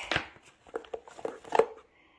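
Plastic food containers being handled in an insulated lunch bag: a few light clicks and knocks, the loudest about one and a half seconds in.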